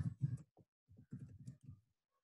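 Computer keyboard typing: a quick run of separate key clicks, then it stops near the end.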